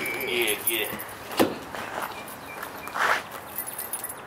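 Footsteps and handling noise as a heavy Peavey 8x10 bass speaker cabinet is carried and lifted, with one sharp knock about a second and a half in.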